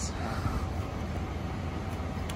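Steady low rumble of background city traffic, with no distinct event standing out.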